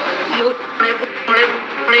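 A woman talking in Malayalam in an agitated voice.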